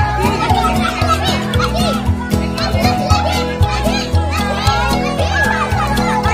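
A crowd of children shouting and cheering in short excited calls, over music with a steady beat.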